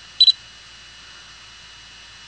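A short, loud electronic double beep about a quarter second in, over a steady background hiss with a faint high whine.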